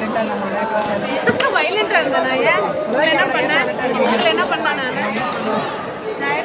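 Many people chattering and calling out at once, echoing in a large sports hall, with a couple of sharp knocks, one about a second in and one near the end.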